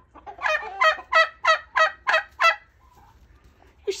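A young domestic turkey calls a quick run of about seven short, evenly spaced notes, about three a second, lasting some two seconds.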